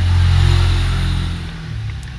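An engine running with a steady low hum that eases off about a second and a half in.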